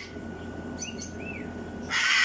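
A cockatoo's loud, harsh scream starts near the end, part of its evening display, after a quieter stretch with a few short high chirps about a second in.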